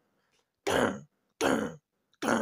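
A person clearing their throat in two short bursts, about three-quarters of a second apart.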